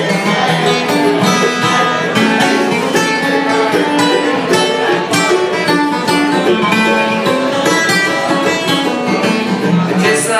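Acoustic guitar and mandolin playing an instrumental passage together, a steady stream of picked notes over the guitar's chords, with no voice.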